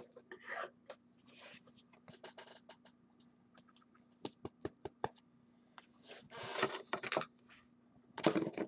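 Trading cards being handled on a desk: soft scattered clicks and scrapes of card stock, with a louder rustling scrape about six to seven seconds in, over a faint steady hum.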